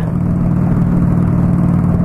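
Honda Shadow VLX motorcycle's V-twin engine running steadily as the bike cruises down the road, heard from the handlebars.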